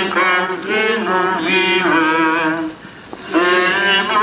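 Voices singing a slow Polish Stations of the Cross hymn in long, wavering held notes, with a short break between phrases about three seconds in.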